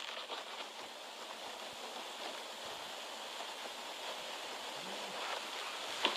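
Steady faint hiss of background noise, room tone or recording noise, with no distinct sound events.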